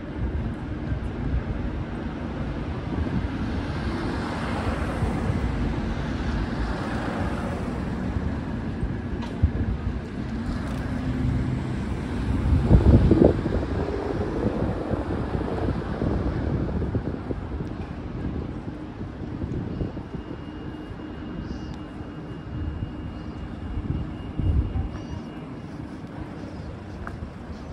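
Outdoor city ambience with a steady low engine drone and hum, swelling to its loudest about halfway through.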